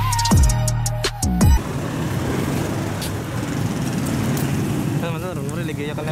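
Background music with a drum beat cuts off abruptly about a second and a half in, giving way to steady street noise with traffic. Voices start near the end.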